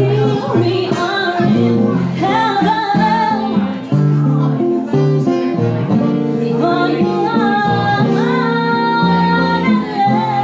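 A woman singing live into a microphone, with long held notes, accompanied by an acoustic guitar.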